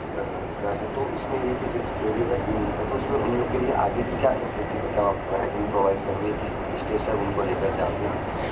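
Faint, off-microphone speech, as from a person asking a question across a room, over a steady low background hum.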